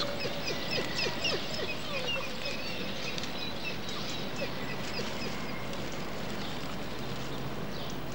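Birds chirping: many short, quick high calls, busiest in the first half and thinning out later, over a steady outdoor background.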